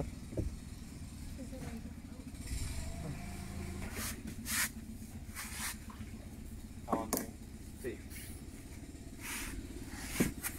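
Outboard motor of a small launch idling low and steady while the boat creeps along.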